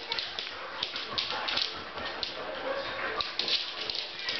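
Two Samoyeds playing tug-of-war, with dog vocal noises over a run of quick clicks and scuffles as they scrabble on the wooden floor.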